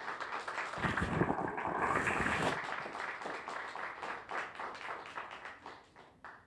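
Audience applauding: the clapping swells quickly, is loudest in the first couple of seconds, then thins out and stops near the end.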